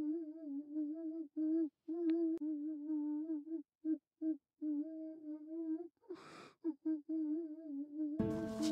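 A voice humming a slow, wavering tune in short broken phrases, with a sharp breath drawn in about six seconds in.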